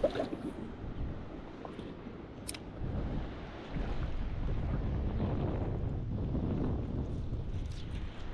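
Wind buffeting the microphone with river water lapping, growing stronger from about four seconds in. A couple of brief clicks come early.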